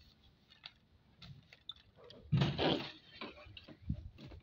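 Crumpled paper pattern sheets rustling and crinkling as they are handled, with small crackles throughout and one louder rustle a little past halfway.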